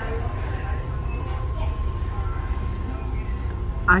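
Restaurant dining-room background: a steady low rumble with a thin, steady high hum and faint voices in the distance.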